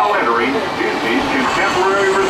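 Indistinct voices talking over the steady running noise inside a moving monorail car.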